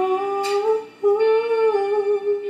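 A woman humming a wordless melody in two long held notes, with a short break between them about halfway through.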